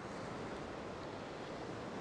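Steady wash of ocean surf breaking on a rock shelf, mixed with wind.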